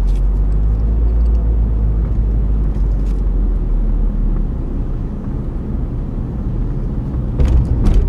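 Low steady rumble of a car's engine and tyres heard from inside the cabin as the car drives along.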